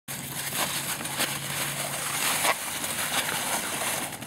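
Crunching and scraping of a manual wheelchair's wheels and front ski runners pushed through slush and icy snow, with irregular louder crunches about every half second to second, likely including footsteps. A low hum runs under the first half.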